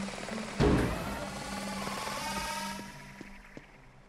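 Cartoon sound effect of a small quadcopter delivery drone lifting off and flying away: a sudden whoosh about half a second in, then a rotor whir that fades away over the next couple of seconds, over background music.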